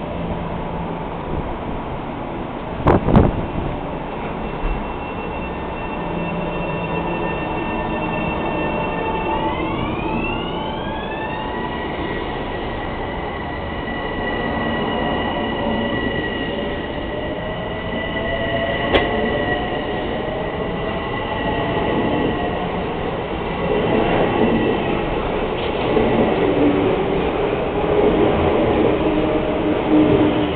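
Metro-North M7A electric multiple-unit train pulling out. There is a sharp thump about three seconds in. The traction motors' whine then glides up in pitch around ten seconds in and climbs again through the second half as the train gathers speed.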